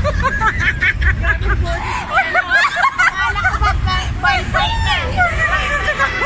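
Many voices shouting and talking over one another, the riders and onlookers of a spinning amusement ride, with a low rumble underneath.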